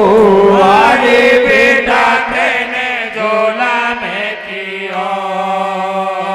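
Male Hari kirtan folk-devotional singing: a voice holds long, wavering sung notes with no clear words over a steady harmonium drone. The notes turn steadier in the second half.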